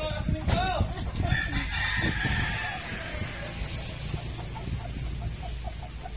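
Chickens calling: a rooster crowing and clucking. There are a couple of short rising-and-falling calls near the start, a long drawn-out falling call from about one to three seconds in, and a quick run of short clucks around four to five seconds in.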